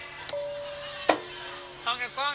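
A small metal percussion instrument rings once with a clear bell-like note, then is stopped short with a click about a second in. A voice starts speaking near the end.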